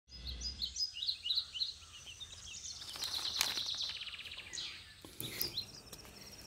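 Night-time outdoor ambience: birds give short high chirps over the first couple of seconds, then a rapid, evenly pulsed insect trill takes over, with a few more chirps near the end.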